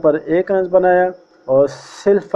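A man's voice narrating in quick phrases: speech only.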